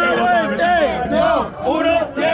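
A crowd of spectators shouting and yelling over one another, reacting to a freestyle rap battle punchline.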